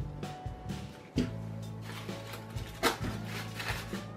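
Background music with steady held bass notes, and a couple of faint clicks and rustles from the artificial flowers being handled.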